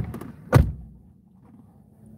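A car door shut with one heavy thump about half a second in, just after a short sharp click.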